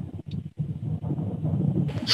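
Low rumble of a car driving, heard from inside the cabin through a phone's microphone, with some wind noise on the mic.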